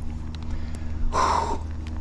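A single short, harsh bird call about a second in, over a steady low hum.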